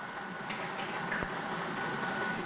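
Lottery draw machine running with a steady rush of air. About a second in comes a single sharp knock as a numbered ball drops into the clear acrylic catch chamber.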